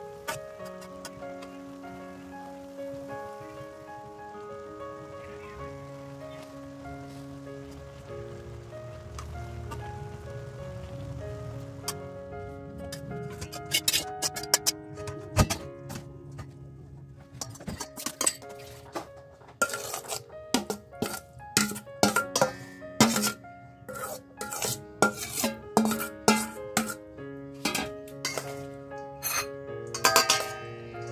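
Background music with a steady melody. From about halfway, a metal spoon clinks repeatedly against a stainless steel colander and bowl as seaweed is stirred and mixed.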